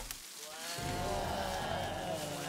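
A long drawn-out moaning voice from the animated episode's soundtrack, starting about a second in and holding a slowly wavering pitch, the sound of the sick, zombie-like campers closing in.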